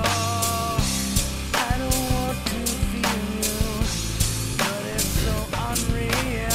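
Playback of a band recording with drums and a singing voice, played loosely without a click, with a looped percussion sample layered on top and kept in time with the song's wandering tempo.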